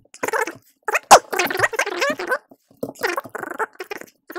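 A voice played back fast, pitched up into rapid, unintelligible chatter.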